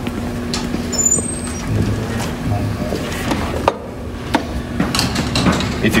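Footsteps and handling noise: scattered light knocks and clicks over a steady low room hum, as someone walks over to a planter row unit and takes hold of its seed meter.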